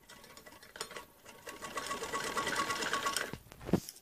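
Sewing machine stitching, its needle running in a fast, even rhythm that grows louder after about a second and a half, then stops with a thump near the end.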